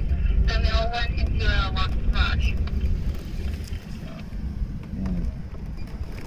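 A man talks briefly for the first two seconds or so, over a steady low rumble that continues after he stops.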